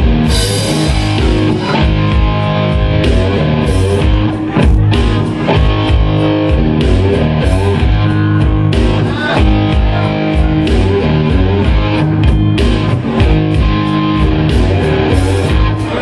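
Live blues-rock band playing without vocals, electric guitar to the fore over bass guitar and a drum kit.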